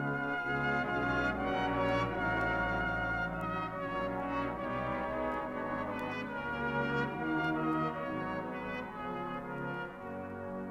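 Brass band playing held chords across the full band, the sound easing slightly toward the end.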